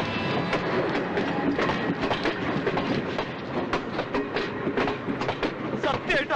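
Passenger train carriages rolling along a station platform, steel wheels clattering in an uneven run of clicks over the rail joints.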